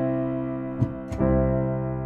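Sampled piano (CinePiano) holding a C major chord voiced C–C–G–C–E, with the third, E, placed around middle C, ringing and slowly fading. The voicing gives the chord a fuller, richer, more regal sound.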